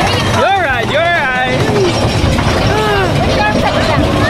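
Roller-coaster riders screaming and laughing, with two big rising-and-falling cries in the first second and a half and shorter ones after, over the low rumble of the moving coaster train.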